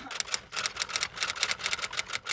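Typewriter sound effect: a rapid, even run of key strikes as the text types out letter by letter.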